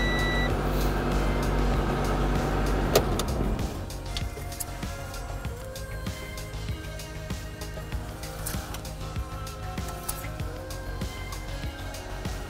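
Acura Vigor's 2.5-litre inline-five engine idling just after start-up on fresh oil, with a short electronic beep right at the start. The engine sound drops away about four seconds in, leaving light background music.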